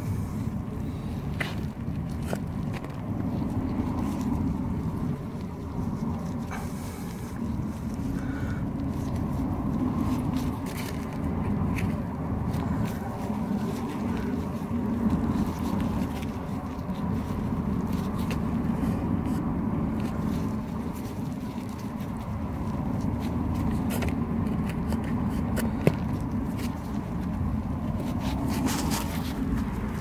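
Steady low outdoor rumble throughout, with occasional faint scrapes and clicks from hands working soil while a tomato seedling is planted. One short sharp knock stands out about 26 seconds in.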